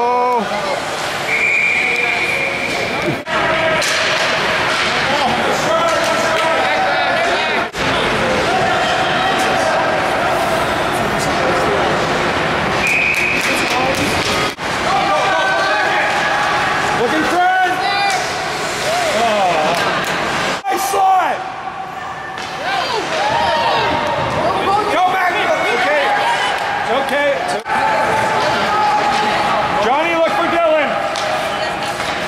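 Ice hockey rink sound during youth play: spectators shouting and cheering, with the knocks and slams of pucks, sticks and players against the boards. A high steady tone sounds twice, each held about a second and a half.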